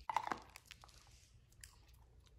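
Puppy chewing dry kibble picked up off a tile floor: faint, scattered crunches and clicks, loudest just at the start.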